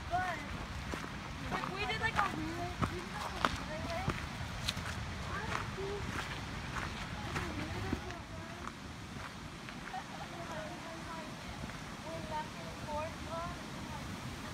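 Faint voices of hikers talking a little way off, with irregular footsteps on a rocky dirt trail.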